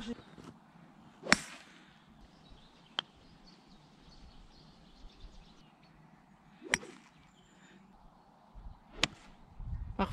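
Golf clubs striking balls: a sharp crack about a second in, a second strike a little past the middle, and a few fainter ticks between, over a quiet open-air background.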